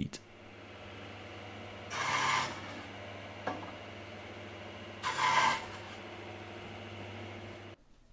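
Bandsaw running with a steady hum, its blade cutting twice into a 44 mm pine workpiece, about two seconds in and again about five seconds in; each cut is a short rasping burst as the wood is pushed in to a depth stop to saw the tenon cheeks.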